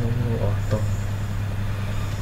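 A person's voice speaking briefly near the start, then a pause in the talk over a steady low hum.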